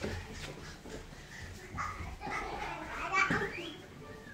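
A toddler vocalizing while playing: a few short wordless cries and calls, with a rising squeal near the end.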